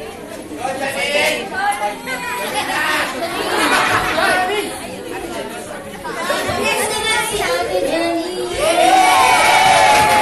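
Crowd chatter in a large, echoing room: many people talking and calling out at once, with one voice rising above the rest near the end.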